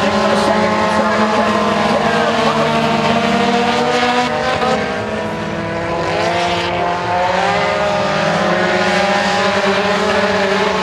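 Several four-cylinder front-wheel-drive mini stock race cars running hard on a dirt oval, their engines sounding together at several different pitches. About halfway through the engine notes drop briefly and then climb again.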